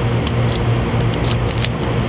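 A steady low machine hum with a scatter of light, sharp clicks and ticks, about a dozen across two seconds.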